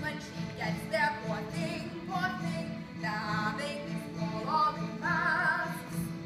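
A woman singing a musical-theatre song with vibrato over instrumental accompaniment, holding a long wavering note near the end.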